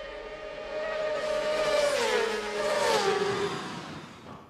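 A racing motorcycle's engine at high revs going by on a road course, growing louder, then its note dropping in pitch in two steps about two and three seconds in.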